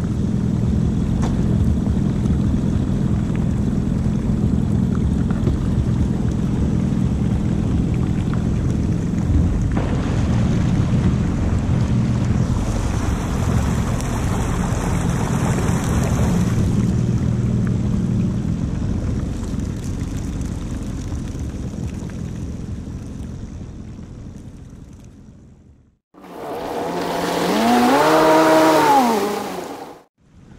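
Personal watercraft (WaveRunner) engine running steadily under way, with a rush of water and wind, fading out about three-quarters of the way through. After a brief silence, an engine revs up and back down near the end, then cuts off abruptly.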